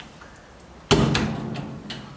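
Firebox door of a Drolet Bistro wood cook stove swung shut with a single loud metal clunk about a second in, which rings out briefly. A lighter click follows near the end.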